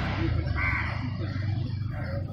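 Sick stray dog, thought to have rabies, making a faint cracking, rasping sound from its throat and neck as it lies still, over a low steady background rumble.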